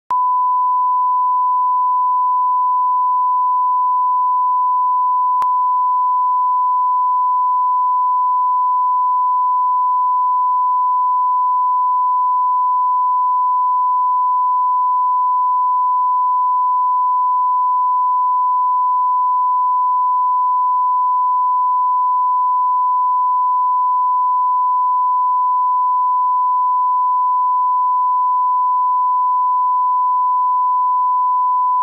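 Steady 1 kHz reference tone, the line-up test tone that accompanies colour bars: a single pure, unbroken beep held at constant level.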